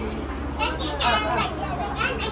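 Excited, high-pitched voices of children and adults in a room, rising and falling in pitch, starting about half a second in.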